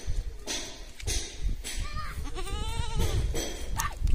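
Goat hand-milked into a steel cup: short hissing squirts of milk hitting the metal, about two a second. About two seconds in, a goat bleats once, a wavering call lasting just over a second.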